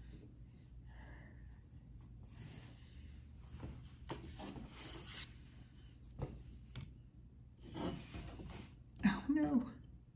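Faint rustling and rubbing of a cotton dish towel as it is shaken out and smoothed flat on a table, with a light tap about six seconds in.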